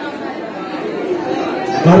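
Chatter of many voices in a large hall, heard while the microphone speaker pauses. A man's amplified voice comes back in near the end.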